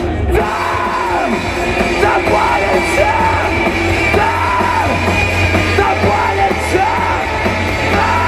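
Live rock band playing through a festival PA: electric guitars, bass and drums, with the singer's voice carrying repeated rising-and-falling phrases over a steady heavy bass.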